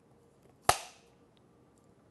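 Film clapperboard's hinged clapstick snapped shut once, about two-thirds of a second in: a single sharp clack with a brief echoing tail.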